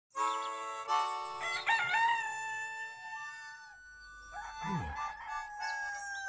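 A rooster crowing: a long cock-a-doodle-doo that steps up in pitch and then holds, lasting about three and a half seconds. A second, quieter pitched call with a falling low note follows about a second later.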